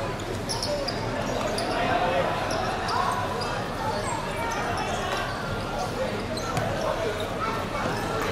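Soccer players calling out to each other on an outdoor hard-court pitch, with the thuds of the ball being kicked and bouncing and the players' footsteps.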